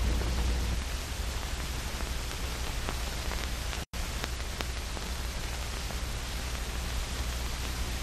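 Steady hiss and low hum of an old film soundtrack with no speech, a few faint clicks, and a brief complete dropout about four seconds in.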